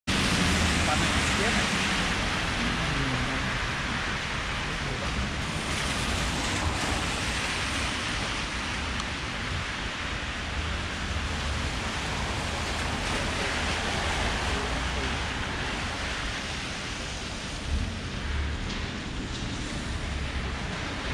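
Steady hiss of rain and car tyres on a wet street, with a low rumble underneath.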